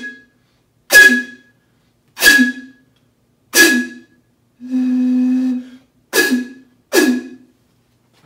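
Breath blown across the mouth of a glass bottle, making its air column resonate: six short, hard puffs, each a breathy hoot with a higher whistle above the low note, and one steadier low hoot lasting about a second near the middle. Blowing harder sounds a second, higher resonant frequency above the fundamental.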